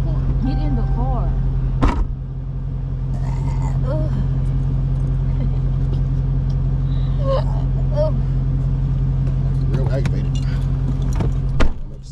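Car engine idling steadily in park, heard from inside the cabin, with a sharp thump about two seconds in and a car door slamming shut near the end.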